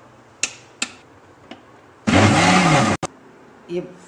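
Electric kitchen mixer grinder run in one short pulse of just under a second, grinding boiled raw mango into pulp: the motor whirs up and down, then cuts off abruptly. Two sharp clicks come before it and one just after.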